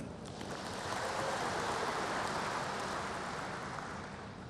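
A large audience applauding, a steady wash of clapping that swells about a second in and eases off near the end.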